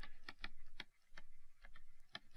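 Plastic stylus tapping and scratching on a pen-display screen while handwriting: a quiet, irregular run of small ticks.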